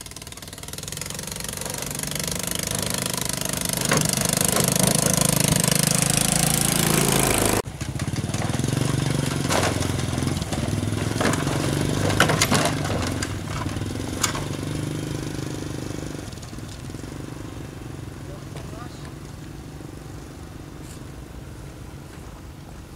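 A small motorcycle's engine running and growing louder as it approaches over the first several seconds. Then several sharp knocks and clatters of loose wooden bridge planks as the bike crosses, and the engine fades away.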